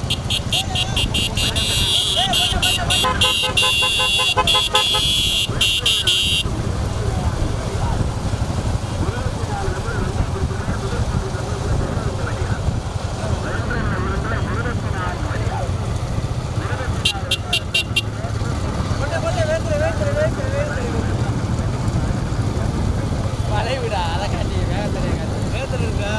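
Motorcycle engines running at low speed beside racing bullock carts, with a rapidly pulsing horn sounding for about six seconds at the start and again for about a second near the middle. Men shout over the engine noise.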